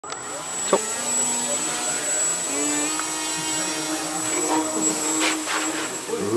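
Electric motor and propeller of a foam RC rotating-wing craft running with a steady hum and a high whine, the hum stepping up in pitch about two and a half seconds in as the throttle is raised. A single click is heard near the start.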